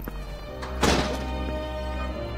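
A single thunk at a door about a second in, heard over soft background music.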